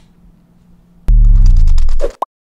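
Faint room tone, then about a second in a sudden, loud, deep boom whose pitch falls, with a crackle of sharp ticks above it: the sound effect of a production-company logo sting closing the video.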